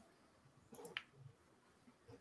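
Near silence, with a couple of faint, short clicks about a second in.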